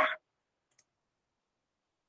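Near silence with a single faint click about a second in.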